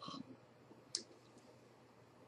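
Quiet room tone after a short spoken "um", with one sharp click about a second in.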